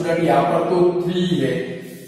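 A man's voice with long held syllables, trailing off near the end.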